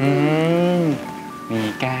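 A man's drawn-out closed-mouth "hmm" lasting about a second, its pitch rising and then falling, followed by a few spoken words. Soft background music plays underneath.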